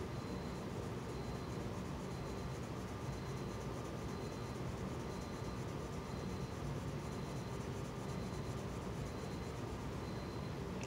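Colored pencil shading on paper: a steady, soft scratching of small, quick strokes.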